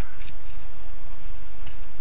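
A paper slip being tucked up behind a car's sun visor against the headliner: a faint rustle with two light clicks, over a steady low rumble.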